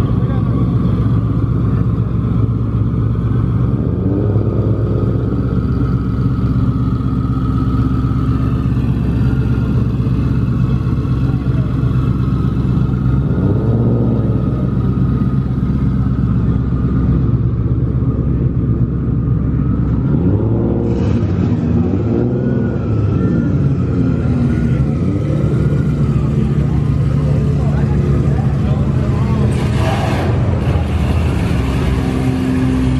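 Car engines idling, with a few revs that rise and fall, over the chatter of a crowd.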